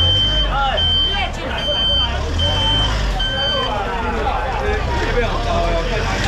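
A vehicle's reversing alarm beeping: five steady high-pitched beeps about 0.8 s apart that stop a little under four seconds in, over a low engine rumble and crowd chatter.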